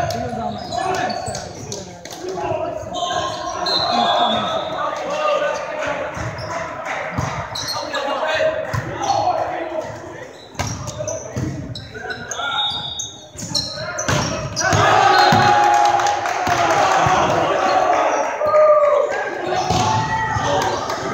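Indoor volleyball rally: the ball struck by hands in sharp smacks that echo around a large gymnasium, mixed with players' calls and shouts that grow louder in the last few seconds.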